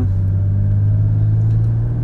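Steady low rumble of a car being driven, heard inside its cabin.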